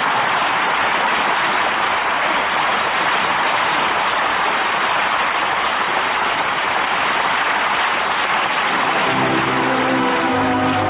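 Studio audience applause, steady and loud, after the closing good-nights of a radio play. An orchestral brass theme comes in under it near the end.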